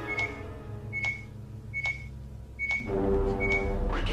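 Motion-tracker pings: five short, high electronic beeps, one about every 0.8 seconds, over a low hum. Music comes in about three seconds in.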